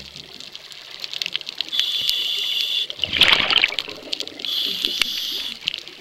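Scuba diver's regulator breathing heard underwater: a hissing inhalation, a burst of exhaled bubbles about three seconds in, then a second hissing inhalation, with scattered sharp clicks throughout.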